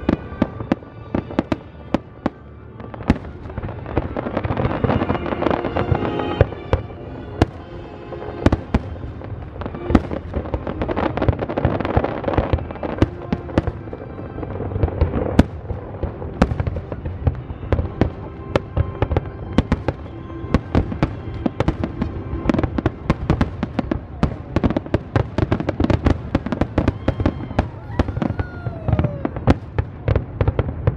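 Aerial fireworks bursting in quick succession: dozens of sharp bangs and crackles, with music playing underneath throughout.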